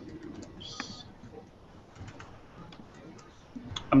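Faint, sparse clicks of a computer keyboard and mouse, with a short hiss about a second in. A voice starts right at the end.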